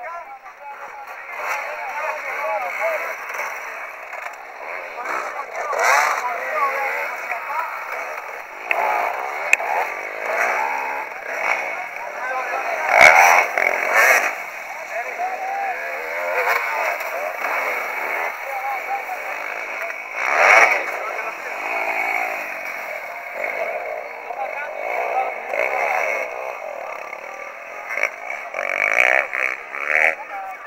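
Enduro dirt bike engines revving up and down as riders work the course, with repeated rising and falling surges; the loudest bursts come about halfway through and again about two-thirds of the way in.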